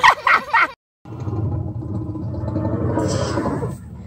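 A baby's high-pitched vocalising: a few short squeals that bend up and down, cut off sharply less than a second in. After a short silence a steady low rumbling noise follows, with a hiss on top near the end.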